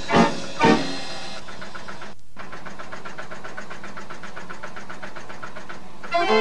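A Decap dance organ's tune ends on two last chords, then the organ's machinery keeps running between tunes as a steady, fast, even mechanical clatter, with a brief break about two seconds in.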